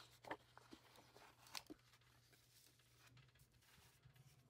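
Near silence, with a few faint rustles and taps of planner paper and a plastic sticker sheet being handled, mostly in the first couple of seconds.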